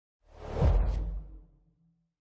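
A single whoosh sound effect with a deep rumble under it, swelling up quickly and dying away within about a second and a half: a logo sting for the closing brand card.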